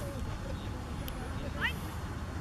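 Outdoor ambience: a steady low rumble with scattered faint voices, and one short rising call near the end. A single faint click about a second in.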